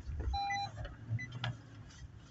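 A pickup truck's parking-sensor warning beeps inside the cab: one beep about a third of a second long, then two short higher blips, over the low rumble of the truck climbing a soft dirt hill.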